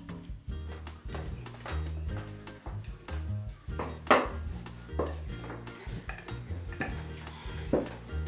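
Background music with a stepping bass line, over a few sharp knocks of a wooden rolling pin on a wooden pasta board, the loudest about four seconds in and another near the end.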